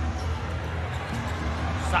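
Basketball arena sound: a basketball bouncing on the hardwood court over steady crowd noise and a low rumble.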